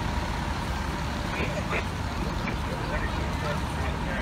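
Steady low rumble of idling vehicle engines, with faint voices in the background.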